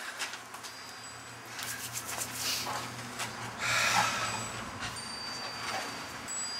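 Faint wind chimes ringing now and then over a steady low hum, with two short stretches of rushing noise in the middle.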